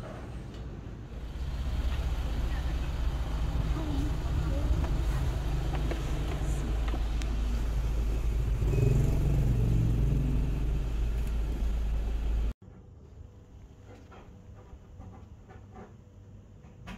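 Road and engine rumble inside a moving vehicle's cabin, growing louder about a second and a half in, then cutting off suddenly near the end to a quiet room with a few faint clicks.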